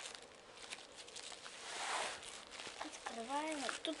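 Yellow padded paper mailer being cut and handled, with a click at the start and a rustling scrape swelling up about two seconds in. A child's voice murmurs near the end.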